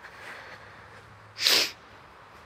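A person sneezes once, a short, loud burst about one and a half seconds in.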